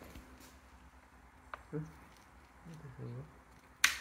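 A quiet room with a soft murmured "hmm". A single short, sharp click-like noise comes just before the end.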